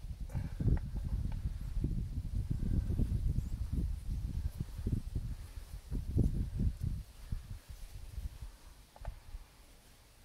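Wind buffeting the microphone: irregular low rumbling with soft knocks, dying away about seven seconds in.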